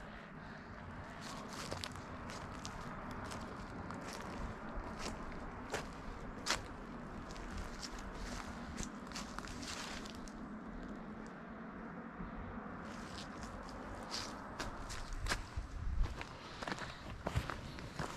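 Footsteps of a person walking on a dirt trail strewn with dry leaves: irregular short scuffs and crunches over a low steady rumble, with fewer steps for a few seconds around the middle.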